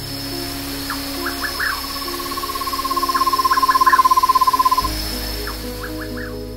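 Buff-fronted owl (Aegolius harrisii) singing: one long, rapid trill on a single pitch that swells in loudness and stops about five seconds in. Background music plays underneath.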